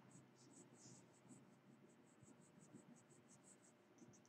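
Graphite pencil scratching on paper in quick, short flicking strokes, about five a second, as eyelashes are drawn. The sound is faint.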